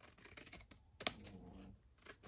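Scissors snipping through 12x12 scrapbook paper in short, faint cuts, with a sharper snip about a second in.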